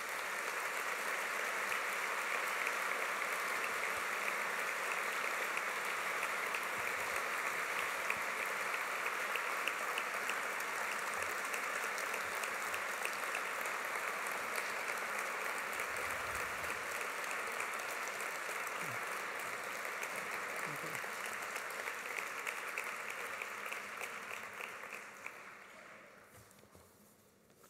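A large audience applauding, a steady sustained clapping that dies away near the end.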